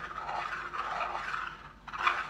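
Klask player piece sliding across the game board, dragged by the magnet handle underneath: a continuous scraping that stops just before the end.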